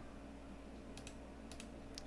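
A few faint computer clicks, some in quick pairs, spaced roughly half a second apart, over a low steady hum.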